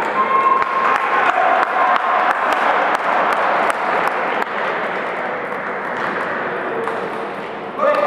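Table tennis ball clicking sharply off bats and table during a rally, a few short hits each second, over the steady chatter of a crowd in a hall.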